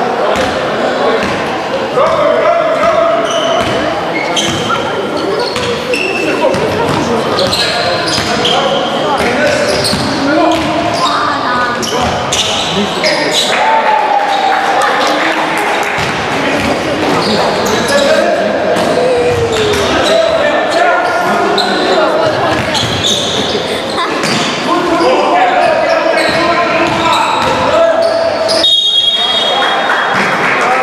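Sounds of an indoor basketball game in an echoing sports hall: players and people courtside calling out, and the ball bouncing on the court. A brief high whistle sounds near the end.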